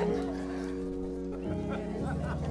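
Keyboard playing sustained chords, moving to a new chord about one and a half seconds in.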